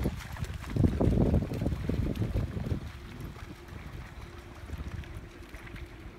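Wind buffeting a phone microphone, heavy gusts in the first three seconds easing to a lighter hiss. A faint steady hum runs under it in the second half.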